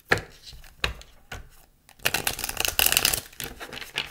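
A deck of oracle cards being shuffled by hand on a wooden table: a sharp tap just after the start and another a little before a second in, then about a second of rapid card flutter around the middle as the two halves are riffled together.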